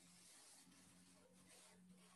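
Near silence: a faint steady low hum and hiss.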